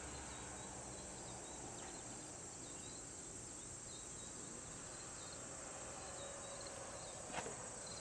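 Faint, steady high-pitched chorus of insects in the pasture, with a brief knock near the end.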